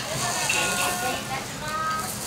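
Beef katsu sizzling on a small tabletop grill, with a steady hiss and background voices and music.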